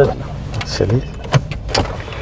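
Toyota SUV cabin noise while creeping through city traffic: a low, steady engine and road rumble, with a few sharp clicks scattered through it.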